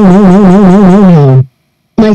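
A single electronic synthesizer note with a fast, even vibrato, dropping in pitch and cutting off about one and a half seconds in.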